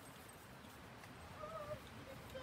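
A dog gives one short whine about a second and a half in, over faint outdoor background noise.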